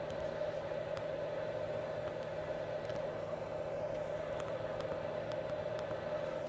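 Power drill running steadily at low speed, spinning a brushed motor's armature held in its chuck, with a few faint ticks.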